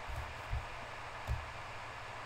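Steady hiss and low hum of a home recording setup's background noise, with two faint low thuds about half a second and a second and a quarter in.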